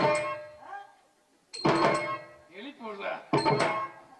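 Tabla struck in loud, ringing clusters of strokes, one about every second and a half to two seconds, as folk-drama dance accompaniment.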